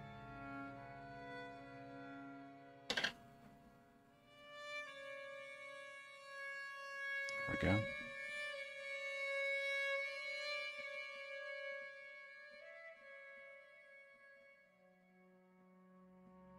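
Background music of slow, sustained bowed-string and organ-like chords. Two brief sharp knocks cut through it, about three seconds in and again about seven and a half seconds in.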